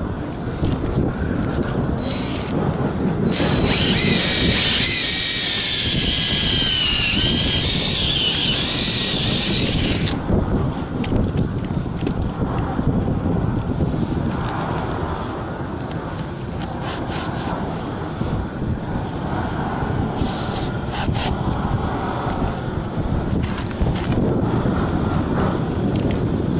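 Electric drill boring a pilot hole into a structural concrete roof deck: from about three seconds in, a high motor whine that wavers in pitch for around six seconds, then stops. Wind buffets the microphone throughout.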